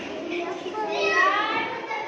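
Young children chattering and calling out, with one child's high voice rising and falling loudest about a second in.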